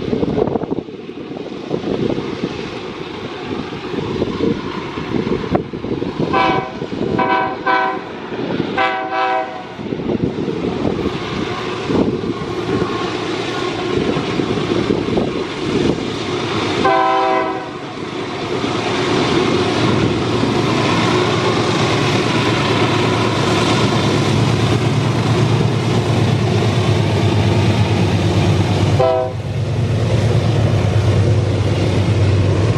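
Diesel-electric locomotives hauling a loaded iron ore train up a steep grade, engines working hard under load, the rumble growing louder in the second half as they draw near. The horn sounds a quick series of blasts about six to ten seconds in, once more around seventeen seconds, and briefly just before the end.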